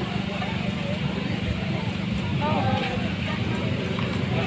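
Outdoor street-market background: a steady low rumble with indistinct voices of people nearby.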